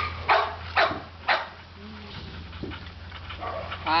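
Dog barks: three short, sharp barks about half a second apart in the first second and a half, then quieter.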